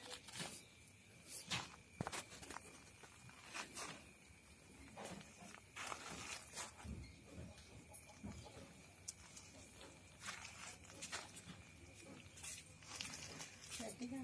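Faint, irregular rustles and clicks, typical of a handheld phone brushing close against dry rice straw and plastic sheeting. A faint steady high-pitched tone runs underneath.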